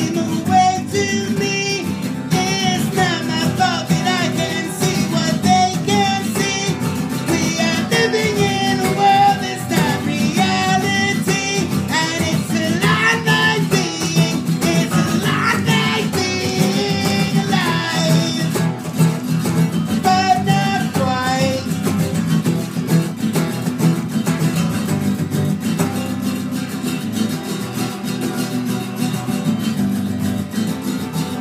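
Acoustic guitars strumming chords together, with a wavering lead melody over them for roughly the first two-thirds, then the guitars carrying on alone.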